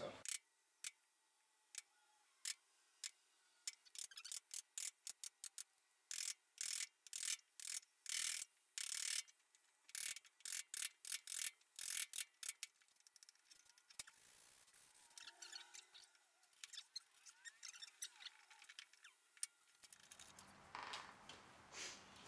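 A steel chisel chopping and paring inside a mortise in a wooden workbench leg to square it up. It makes a run of sharp knocks, some in quick strings, through the first half, then quieter scraping with a last knock near the end.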